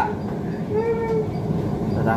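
Steady low hum inside a car of the Kalayang skytrain, the driverless airport people mover, with a short pitched tone lasting about half a second about a second in.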